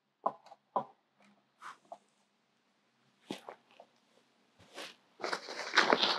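Scattered light taps and clicks of a thin rod being fitted into the holes of a hard-shell rooftop tent. About five seconds in, a denser rustling of tent fabric starts.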